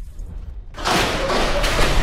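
A road crash in a film: a low rumble, then from about a second in a loud, harsh scraping as a motor scooter slides on its side along the asphalt, striking sparks.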